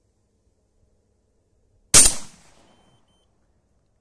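A single 12-gauge shotgun shot about two seconds in: a sharp report whose echo dies away within about a second. The round is a handloaded 28 g Lee slug fired with a medium-strength Nobel Sport primer.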